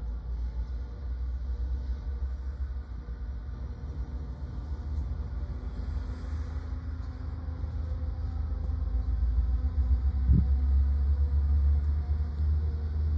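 Distant rumble of approaching Norfolk Southern GP60 diesel locomotives (EMD V16 two-stroke engines), a steady low drone that slowly grows louder as the train draws near, with a brief knock about ten seconds in.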